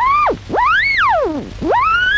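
Valve radio receiver whistling as it is tuned: three sweeping tones, the first two rising and falling within about half a second each, the third rising near the end and held steady. The set is picking up no station, only tuning howl.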